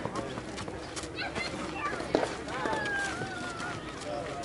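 Distant voices of players and spectators talking and calling out on a softball field, with one longer drawn-out call in the second half. A single sharp knock sounds about two seconds in, among a few lighter clicks.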